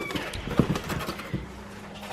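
A cardboard shipping box and papers being handled: a few soft knocks and rustles as the flaps are opened.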